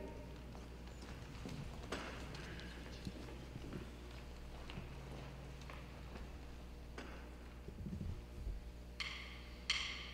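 A quiet pause in a large hall with scattered light knocks and shuffles as the steel band gets ready. Near the end come a few evenly spaced bright clicks, a count-off before the band comes in.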